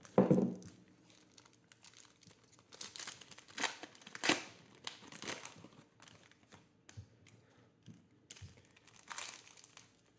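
Foil wrapper of a Panini Certified trading-card pack being torn and crinkled open by hand, in irregular bursts; the packs are difficult to open. A brief louder thump comes right at the start.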